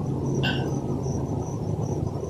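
Crickets chirping: short high chirps repeating evenly, about three a second, over a low steady hum.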